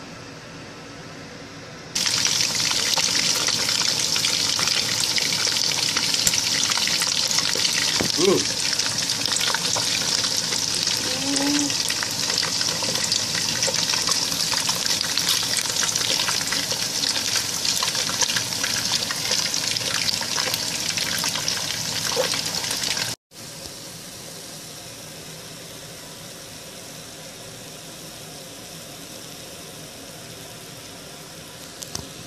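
Chicken skins deep-frying in hot oil: a loud, steady sizzle full of crackles that starts about two seconds in and cuts off sharply a little after twenty seconds, leaving a much quieter steady hiss.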